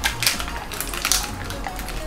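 Small packaging packets being torn and crinkled open by hand: a rapid, irregular run of crackles. Background music plays underneath.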